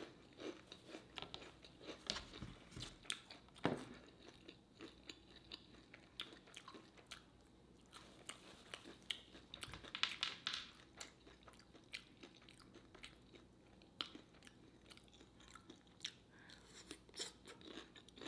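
Faint close-miked chewing of a freshly fried lumpia (Filipino egg roll): irregular crisp crunches from the fried wrapper, coming thicker about ten seconds in.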